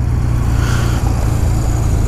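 Honda Rebel 250's air-cooled parallel-twin engine idling steadily, picked up by a helmet-mounted microphone.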